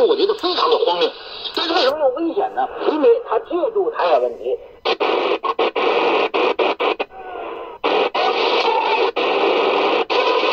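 Shortwave AM broadcast speech from the small speaker of a TEF6686 DSP receiver, thin and narrow-band. About five seconds in, the speech gives way to hiss and static that keeps breaking off in short gaps as the tuning steps between frequencies in the 7 MHz shortwave band.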